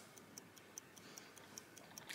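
Faint, fast ticking of a clock, about four even ticks a second, over near silence.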